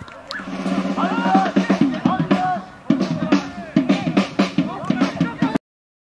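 Singing voices over a steady drum beat, which cuts off suddenly near the end.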